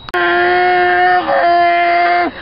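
A click, then a voice holding one long steady note, broken by a brief waver just past halfway and picked up again at the same pitch.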